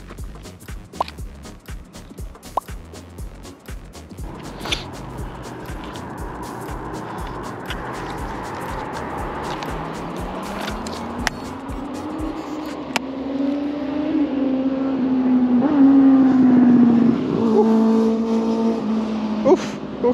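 A car engine accelerating past. Its pitch climbs for several seconds, holds, then falls, and it is loudest about three-quarters of the way in. Music plays underneath.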